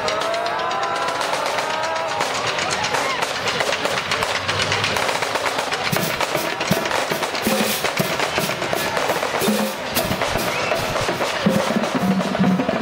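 Marching band drumline playing a street cadence: rapid snare drum strokes and rolls over bass drum hits, the bass drums heavier in the second half.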